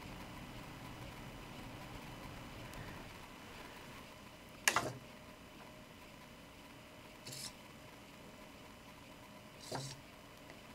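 Quiet room tone with a faint steady hum, broken by one sharp click a little before halfway and two short, softer noises later, as a servo-driven robot leg on a breadboard is switched on and handled.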